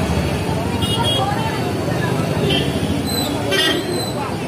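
Busy street traffic: motorbikes and cars passing with a crowd talking, and a couple of brief horn toots.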